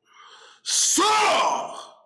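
A forceful non-word vocal outburst: a soft breath in, then about two-thirds of a second in a loud hissing blast of breath that runs straight into a shouted cry falling in pitch.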